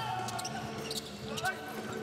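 Basketball game court sound: a ball dribbled on a hardwood floor, sneakers squeaking, and players calling out, with short sharp knocks and squeals scattered through.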